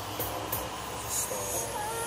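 Low, steady hum of a car engine and tyres heard from inside the cabin as the car creeps down a car-park ramp.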